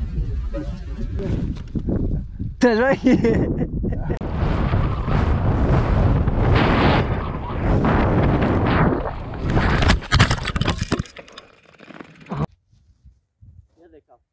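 Mountain bike ridden fast down a dirt trail, heard from a rider-mounted camera: a steady rush of wind and tyres on dirt, with a short cry about three seconds in and a clatter of sharp knocks around ten seconds in. The noise drops away suddenly a couple of seconds later.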